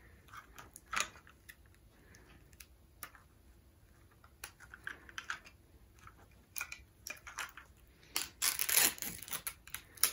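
Light clicks and crinkles of a plastic blind-bag toy capsule and its paper wrapping being handled and pried open, scattered and faint at first, with a louder run of rustling near the end.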